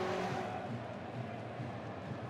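Ice hockey arena crowd noise, a steady murmur from the stands that slowly fades.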